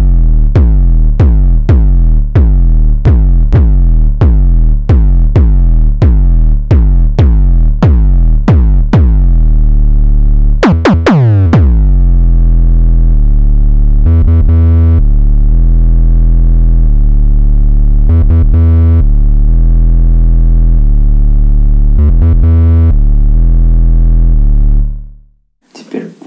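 Behringer Neutron analog synthesizer playing an 808-style kick drum patch: deep hits, each dropping in pitch, about two a second for ten seconds. A quick cluster of hits follows, then long sustained bass notes that change pitch a few times and cut off suddenly near the end.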